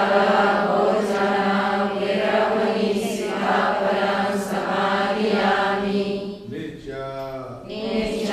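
A large group of Buddhist nuns chanting together in Pali in a slow, drawn-out unison phrase as they take the precepts. The phrase breaks off briefly near the end before the next one begins.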